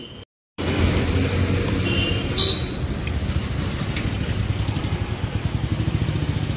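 A steady low motor rumble that starts after a brief drop to silence about half a second in.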